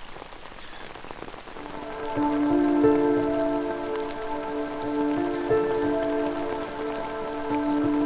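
Steady rain falling, with soft background music of long held notes coming in a little under two seconds in.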